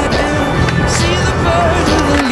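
A song with a singing voice and drums. Under it, skateboard wheels roll and grind along a concrete ledge, with a steady low rumble from about half a second in.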